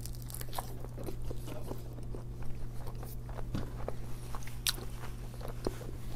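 Close-miked biting and chewing of a bagel sandwich with lox, cream cheese and avocado: a bite at the start, then irregular soft crunches and wet clicks of chewing. A steady low hum runs underneath.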